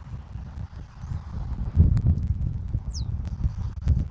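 Wind buffeting an outdoor microphone in uneven gusts, with scattered light ticks. A single short, high bird note falls in pitch about three seconds in.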